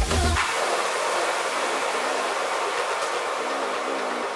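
Progressive house music in a breakdown. The kick drum and bass cut out about half a second in, leaving a steady hissing noise wash with synth tones above it.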